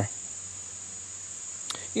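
Crickets chirping in a steady, high-pitched band, with one faint click near the end.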